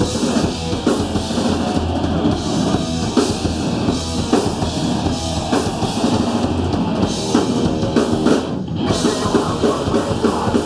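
Hardcore punk band playing live and loud: distorted electric guitars, bass guitar and a pounding drum kit in a dense, unbroken wall of sound.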